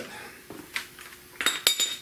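A few light metal taps, then a quick cluster of sharp, ringing metal-on-metal clinks about a second and a half in, as steel tools or parts knock against the engine.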